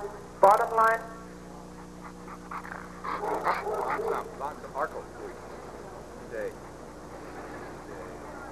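A Rottweiler barks twice in quick succession about half a second in, then faint voices in the background.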